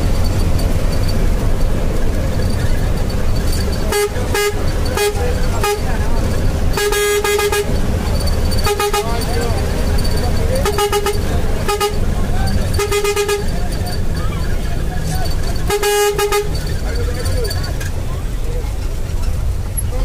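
A vehicle horn honking again and again, short toots and a few longer blasts, about ten in all between about four and sixteen seconds in. Under it runs the steady low rumble of the bus's engine and tyres, heard from inside the moving bus.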